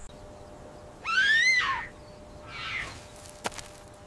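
A bird call: one loud pitched call about a second in that rises and then falls, followed by a fainter, shorter call near the end.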